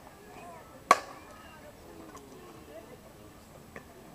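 Softball bat hitting a slowpitch softball: a single sharp, loud crack with a short ring, about a second in. Faint voices in the background, and a much fainter click near the end.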